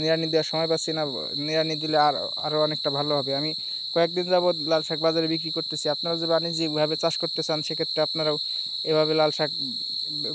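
Crickets keeping up a steady, high-pitched drone, under a man talking with short pauses.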